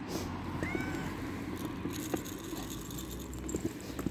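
A cat gives one short meow, rising then falling, under a second in. A few faint clicks follow as dry cat food is tipped from a glass jar onto paving, over a steady low background hum.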